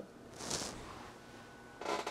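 Quiet room tone with a brief soft hiss about half a second in.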